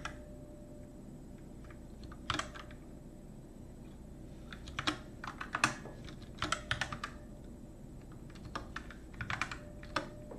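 Typing on a computer keyboard in short clusters of keystrokes with pauses between them, as code is edited and a terminal command is typed.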